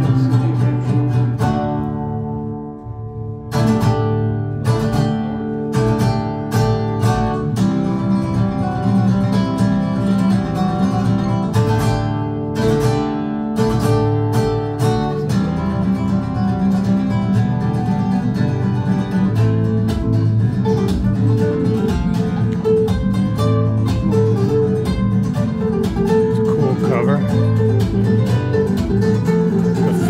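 Acoustic guitar music, plucked and strummed, played back over a pair of Estelon floor-standing loudspeakers driven by Moon by Simaudio electronics. The playing eases to a softer passage about two seconds in, then picks up again with sharp plucked notes.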